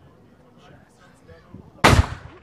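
A single black-powder gun shot near the end, a sharp blast that rings out briefly afterwards.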